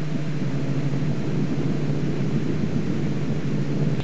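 Extra 300L's six-cylinder Lycoming engine and propeller droning steadily with the throttle pulled way back, under a steady hiss of airflow.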